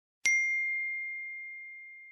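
A single bell-like ding about a quarter second in: one sharp strike leaving a clear high tone that rings on and slowly fades.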